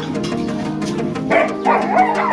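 Background music, and from a little over a second in, dogs barking in several short calls while they play-fight.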